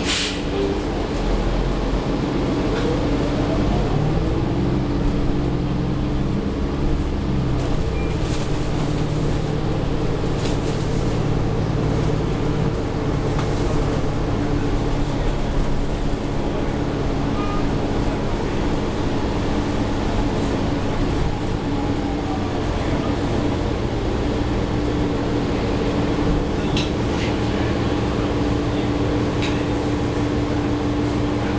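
Inside a New Flyer XDE40 diesel-electric hybrid bus (Cummins L9 diesel, Allison EP40 hybrid drive) pulling away and driving. A sharp knock comes right at the start, then the drivetrain rumbles, with a whine that rises in pitch as the bus gathers speed, over a steady hum.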